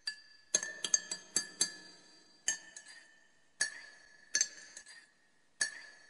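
Metal spoon clinking against a drinking glass as a drink is stirred. A quick run of sharp, ringing clinks comes in the first two seconds, then single clinks about once a second.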